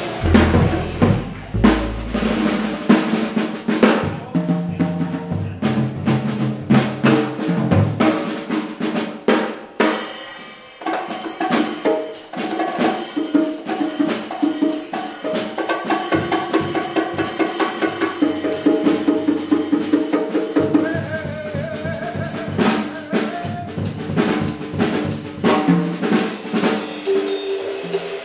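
Live jazz combo playing, with the drum kit prominent: busy stick work on snare, cymbals and bass drum over upright bass and chording piano and guitar. Deep plucked bass notes stand out in the first couple of seconds; from about ten seconds in, rapid even drum strokes dominate.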